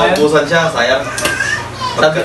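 Men talking, with children's voices in the background.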